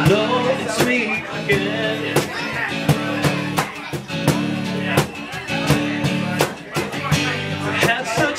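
Live song: a man's voice finishes a sung line at the start, then a guitar keeps playing chords over a steady beat of hand strikes on a cajón.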